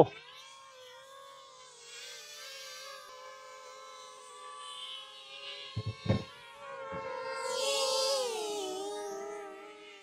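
Small DJI Flip quadcopter's motors and propellers giving a steady, layered whine. The pitch drops from about eight seconds in as the motors slow, and the sound fades near the end. A couple of dull thumps come about six seconds in.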